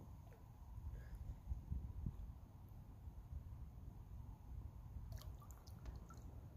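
Faint dripping and small splashes of lake water as a bass is held in the water at the side of a boat and let go, with a few more small splashes near the end, over a steady low rumble on the microphone.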